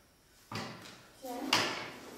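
A chair scraping across the floor as someone gets up from a table: a short scrape about half a second in, then a louder, longer scrape a second later.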